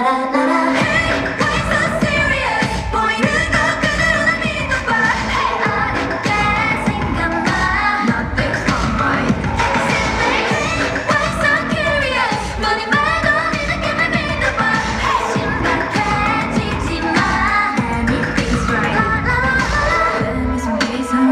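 K-pop dance song by a female group, with sung vocals over a steady beat, played loud through the hall's sound system.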